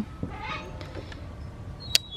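Two magnetic wireless earbuds snapping together with a single sharp click near the end, over a faint outdoor background with a faint high call about half a second in.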